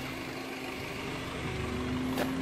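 A steady low engine hum of an idling vehicle, with a faint constant tone, growing slightly louder in the second half.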